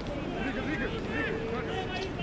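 Faint, distant shouts and calls of footballers on the pitch over open-air field ambience, with no crowd noise.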